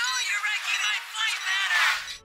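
Film dialogue: a boy's cartoon voice speaking, sounding thin, with everything below the upper midrange cut away.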